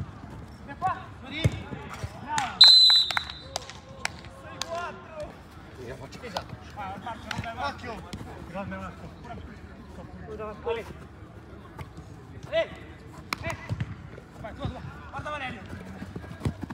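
Football being kicked and bouncing on artificial turf, with scattered sharp knocks throughout, and players shouting across the pitch. The loudest moment is a short, loud high-pitched tone about three seconds in.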